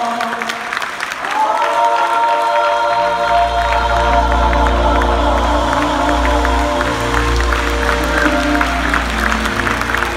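Gospel choir holding a closing chord, with a deep bass note coming in underneath about three seconds in. The audience claps through it.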